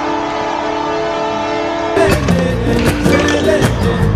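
A multi-note horn chord held steadily for about two seconds, fitting an ice hockey arena's goal horn. About halfway it cuts abruptly to music with a steady drum beat.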